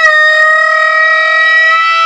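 Blues harmonica playing one long held note, rising slightly in pitch at first, then steady.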